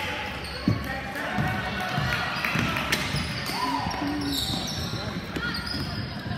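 Basketball game in a gym: a basketball bouncing on the court in scattered knocks, with voices calling out over the echo of a large hall.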